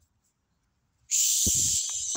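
A man's loud, drawn-out hiss, starting about a second in and lasting about a second, made to flush a flock of domestic pigeons off the grass, with a few low thuds of wings as some of the pigeons take off.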